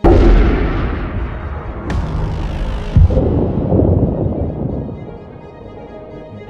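A rifle shot: one loud bang at the start with a long rolling decay, followed by a sharp crack about two seconds in and a heavy thump about a second later, as the bullet strikes a Kevlar body armour vest. Music comes back in underneath as it dies away.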